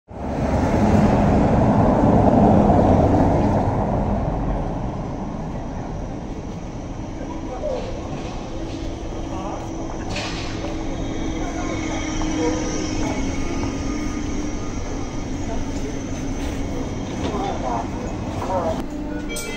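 Electric city bus, a Zhongtong N12 with an electric drive motor, pulling in to a stop over cobblestones amid street noise. The noise is loudest in the first few seconds, and a faint steady drive hum follows as the bus slows.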